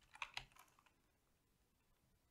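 Computer keyboard typing: a quick run of light keystrokes that stops about a second in.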